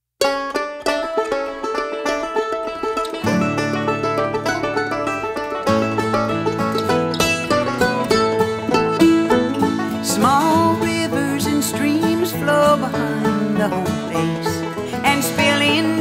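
Bluegrass string band playing the instrumental introduction to a song: quick picked notes from the start, with a bass line joining about three seconds in and more instruments filling in after.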